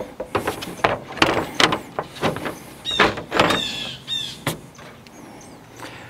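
Grille cover panel being laid over the top of a pickup's grille and shifted into place: a run of knocks, clicks and scraping as it rubs and taps against the grille and radiator support, settling down near the end.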